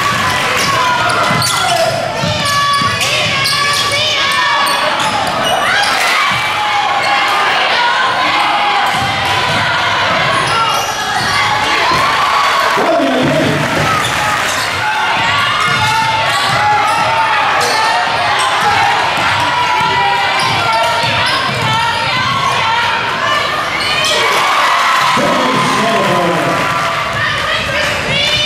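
A basketball bouncing repeatedly on a hardwood gym floor during live play, with players and spectators calling out in a large echoing gym.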